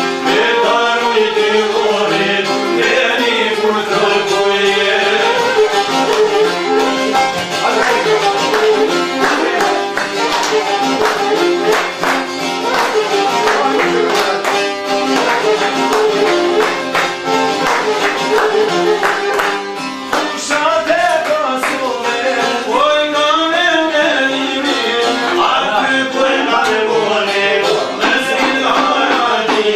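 Albanian folk song: a man singing, accompanied by long-necked plucked lutes and a violin. Hand clapping joins in through the middle.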